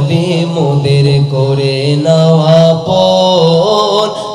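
A man singing a Bengali naat, a devotional song in praise of the Prophet, into a microphone. He holds long notes that slide between pitches.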